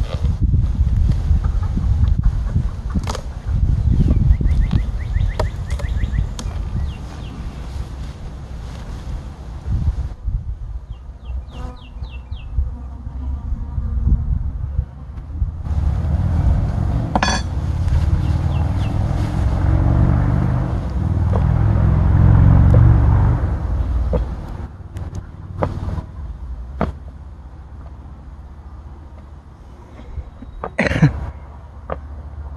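Outdoor wind rumbling on the microphone, with occasional knocks as wooden hive boxes are handled. Two brief runs of quick bird chirps, one near the start and one about twelve seconds in.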